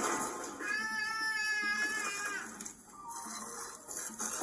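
An animated baby's voice from a film soundtrack: one long high squeal lasting about two seconds and falling slightly at its end, then a short fainter sound of the same voice.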